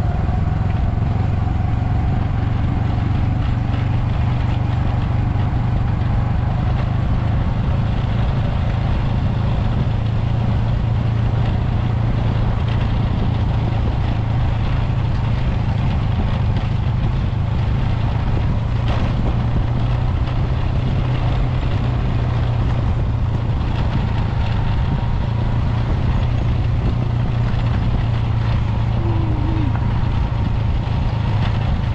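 Motorcycle engine running steadily at cruising speed, heard from on the bike, with wind and road noise.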